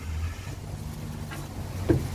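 Golf cart's motor running steadily as the cart drives up a trailer ramp, a low even hum.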